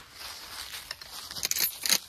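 Rustling handling noise with a few sharp clicks, about a second in and twice near the end, as a rifle is brought up into firing position.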